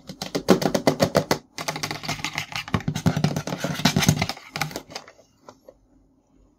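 Fingertips and nails tapping rapidly on the packaging of a boxed toy carry case, a quick run of hollow clicks about ten a second. It pauses briefly after a second and a half, runs again, and thins out to a few taps near the end.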